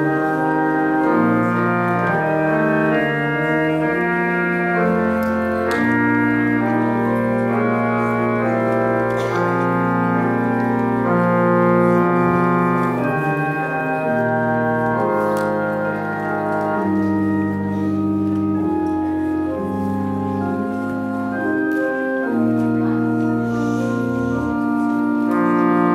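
Pipe organ playing slow, sustained chords that change every second or so.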